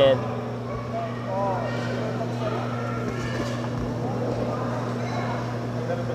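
Boxing arena crowd ambience: scattered voices and murmur from the spectators over a steady low hum.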